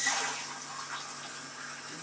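Water running from a kitchen tap into a drinking glass, loudest at the start and tapering off as the glass fills: one of six glasses measured out for a sugar syrup.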